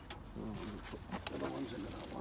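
A pigeon cooing in two short low phrases, with a few light clicks alongside.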